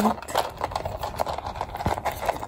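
Gold-tone metal zipper on a Louis Vuitton Mini Pochette being pulled open, a run of small irregular ticks as the teeth part, with a soft knock near the end.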